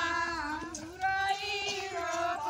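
High female voices singing a devotional folk song in long held notes, with a brief pause about a second in.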